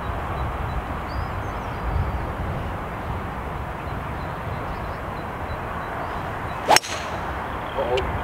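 A golf club striking a ball off the tee: a single sharp crack about seven seconds in, over steady low background noise.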